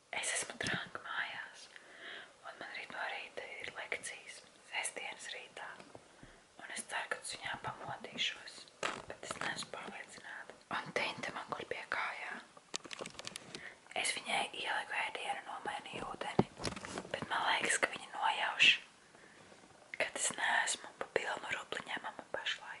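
A woman whispering in short phrases with brief pauses, close to the microphone.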